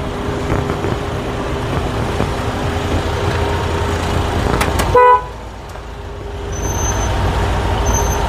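Steady vehicle engine hum, broken about five seconds in by a single short car horn toot, the loudest sound; after the toot the hum drops briefly and then builds again.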